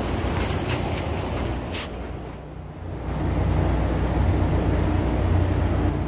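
Steady low mechanical drone and rumble, dipping briefly near the middle and then returning louder, with a few light clicks in the first two seconds.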